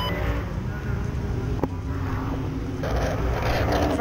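A Limited Late Model dirt race car's V8 engine running steadily at low speed, heard from the camera mounted in the car. There is a single sharp click about one and a half seconds in.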